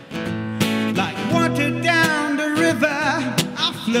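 Live solo song: a steel-string acoustic guitar strummed in chords, with a man's voice singing a wavering, held melody line over it about a second in.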